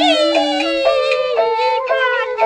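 Beiguan luantan music, Taiwanese traditional opera music. A high melody line holds a long note that slides slowly downward over a lower accompanying line, with light percussion strikes in a steady beat.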